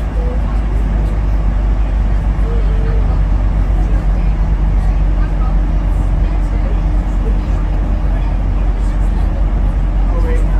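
Steady low rumble of a road vehicle's engine and tyres while driving through a road tunnel, with a faint steady hum joining about halfway through.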